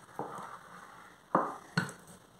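Wooden rolling pin rolling out bread dough on a countertop, with two sharp knocks a little over a second in, about half a second apart.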